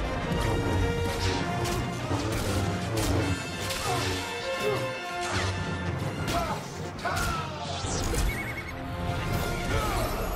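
Film fight sound effects: a rapid string of hits, smashes and swishing lightsaber swings over an orchestral score.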